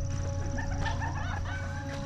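Several short bird calls, rising and falling notes repeated through the second half, over a steady low rumble.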